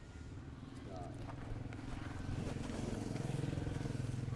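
A vehicle engine humming steadily, growing louder toward the last second and then easing off, as if passing by.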